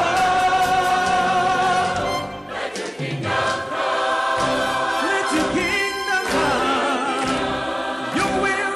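Live church choir and orchestra music, with a male soloist singing held notes with vibrato into a handheld microphone over the accompaniment. The music eases briefly about two and a half seconds in, then builds again.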